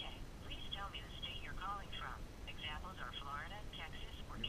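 A person talking in short phrases, the voice thin and narrow like speech heard over a telephone, over a steady low rumble.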